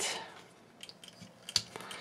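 A few faint, short plastic clicks from the joints and parts of a Takara Tomy Masterpiece MP-47 Hound transforming figure being handled and unfolded, the sharpest about one and a half seconds in.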